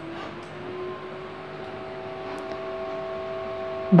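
Background noise at a bus depot with a steady mechanical hum. The hum rises slightly in pitch during the first second, then holds on one even tone.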